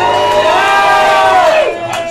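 Crowd cheering over background music, the cheering dying down about a second and a half in.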